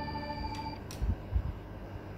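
A held musical note, several tones together, fades out within the first second. After it come a few soft low thumps, such as small plastic toy pieces being handled on a table.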